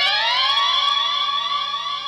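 Synthesized cartoon sound effect: an electronic tone that glides upward, then holds at a steady pitch and slowly fades, marking a scene transition.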